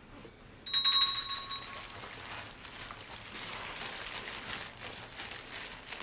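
A bright bell-like ding about a second in, then a steady rustle and crinkle of paper fast-food wrappers being handled and opened around burgers.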